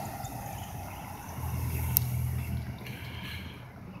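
A full-size van driving past on the street: a low engine and road rumble that eases, then swells again through the middle, with one sharp click about two seconds in.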